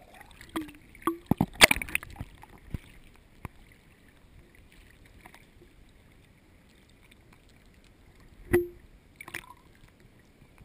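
Water splashing and knocking against a GoPro's waterproof housing as it comes up from under water to the surface. There is a quick cluster of sharp knocks in the first two seconds, a quiet stretch of faint water, then two more knocks near the end.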